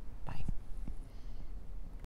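A person's brief breathy vocal sound, like a whisper or breath, about half a second in, followed by a few faint short low sounds.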